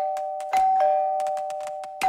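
Electric doorbell ringing nonstop in a two-tone ding-dong, high tone then low, struck again about half a second in, over a scatter of short clicks. It rings without stopping because its wires have been connected straight together.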